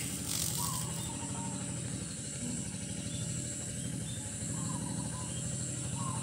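Steady background ambience: a low rumble with a faint, steady high-pitched drone above it.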